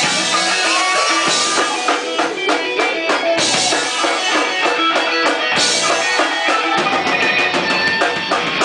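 Progressive rock music: electric guitars and a drum kit playing a busy, loud passage.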